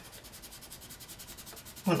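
Soft 8B graphite pencil scribbling over lines on paper, rapid even back-and-forth shading strokes rubbing against the sheet.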